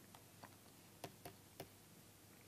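Faint, sharp ticks of a stylus tip tapping a pen tablet or screen while letters are handwritten, about six scattered over two seconds, in otherwise near silence.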